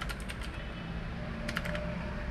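Computer keyboard typing: a few scattered keystrokes, then a quick cluster about a second and a half in.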